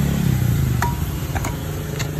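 An engine running steadily, a low even hum, with two short sharp clicks around the middle.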